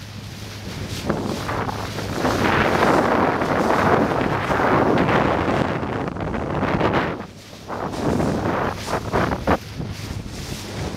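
Wind buffeting the microphone over the rush of choppy sea water along an inflatable boat's hull, with a steady low hum underneath. The noise swells through the middle and drops briefly about three-quarters of the way through.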